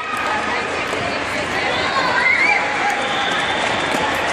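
Spectators and players talking and calling out over one another in an indoor sports hall, a steady wash of voices with a few brief higher-pitched calls.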